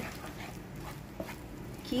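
Wooden spatula stirring a thick spice-and-paste mixture in a non-stick pan, soft uneven scraping with a few light clicks.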